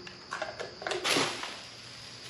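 Plastic wrapping crinkling and rustling in a few short bursts as it is pulled off a plastic tub of tire lube, loudest about a second in, then quieter.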